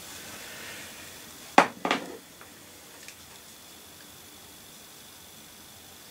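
Two sharp clicks about a third of a second apart, from a small hard object being handled, over faint hiss.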